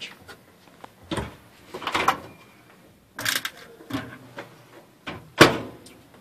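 Overhead kitchen cabinet door being handled and shut: a few scattered knocks and clicks, the loudest a sharp bang near the end.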